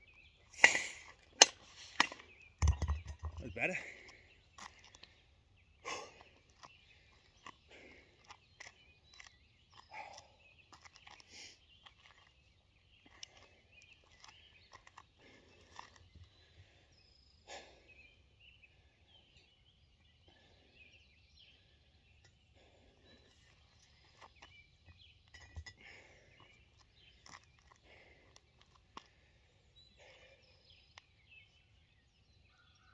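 A pair of 24 kg competition kettlebells coming down after a jerk set: a few sharp knocks, then a heavy thud about three seconds in as they are set on the ground. After that, a quiet outdoor stretch with faint bird chirps over a low wind rumble, and another soft thud near the end.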